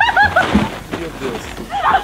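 A quick run of laughter, a few short rapid 'ha's in the first half-second, followed by an excited spoken exclamation near the end.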